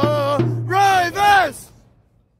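Football supporters singing a chant over a drum beaten about three times a second; the singing stops about one and a half seconds in.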